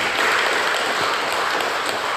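Congregation applauding: many hands clapping together in a steady, dense patter.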